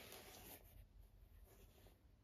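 Near silence with a faint rustle of cotton gloves rubbing against a canvas sneaker as it is handled, strongest in the first half second and then fading.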